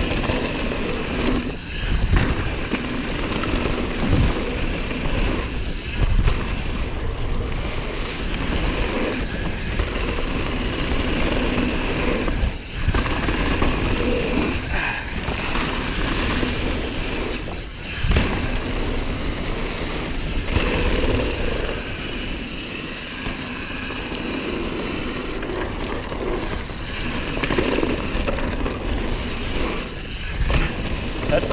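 Mountain bike riding down a leaf-covered dirt singletrack, tyres rolling over dirt and leaves, with wind rushing over the rider-mounted camera's microphone. Thumps from bumps in the trail come every couple of seconds early on.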